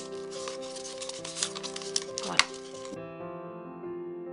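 Paper masking tape crinkling and rustling as it is pressed and smoothed around a plastic cup, with soft clicks, over background piano music. The handling noise cuts off about three seconds in, leaving only the music.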